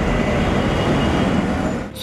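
Steady road-traffic noise of motorcycles, auto-rickshaws and cars driving along a city flyover, ending with an abrupt cut.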